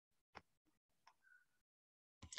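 Near silence, broken by a couple of faint clicks.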